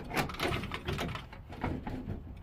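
Irregular plastic knocks and clicks as a yellow Mighty Bracket mini-split support tool is worked loose and lifted away from under a wall-mounted air handler.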